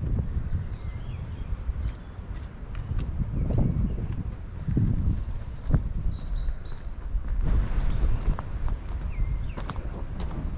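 Footsteps crunching on a gravel path as someone walks, with a low, uneven rumble of wind on the microphone.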